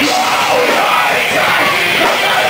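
Live rock band playing loud on electric guitar with a screamed vocal over it, recorded right by the stage.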